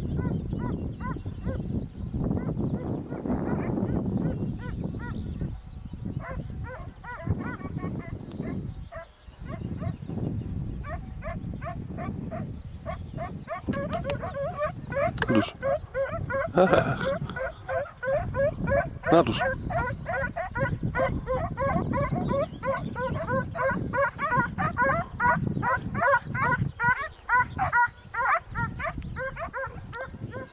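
Distant animal calls, short and pitched, repeating several times a second and growing busier and louder about halfway through, over a low rumble of wind on the microphone.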